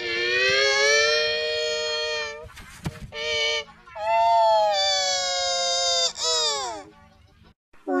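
Long, drawn-out voice-like tones, heavily pitch-shifted by video effects. Four of them, each sliding slowly down in pitch, the last two dropping steeply at the end. A low steady hum runs beneath them and stops near the end.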